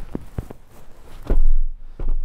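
Rear seat centre armrest being pulled down: a couple of light clicks, then a dull low thump about a second and a half in as it drops into place.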